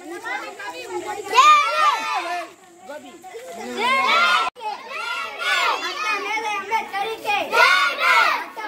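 A group of children's voices calling out together in loud bursts every couple of seconds, with a brief dropout about halfway through.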